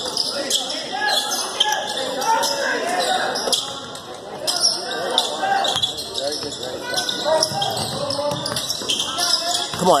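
Basketball bouncing on a hardwood gym floor during live play, with voices from the crowd and bench behind it in a large, echoing gym.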